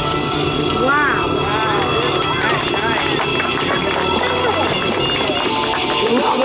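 Background music with people's voices over it, several short rising-and-falling voice calls standing out about a second in and around three seconds in.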